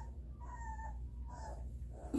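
Three-week-old Rhodesian Ridgeback puppy whining: a few short, high whines, one falling in pitch.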